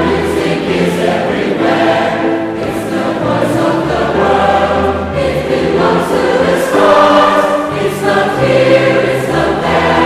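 A choir singing, several voices holding sustained chords that shift every second or two.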